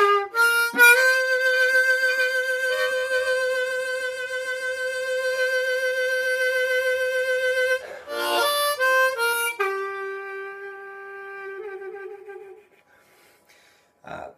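B-flat diatonic harmonica playing a blues phrase in third position: a few quick notes, a long held note with a slight waver, then a quick run. It ends on a lower note, a sustained draw bend, which wavers with vibrato near its end and fades out.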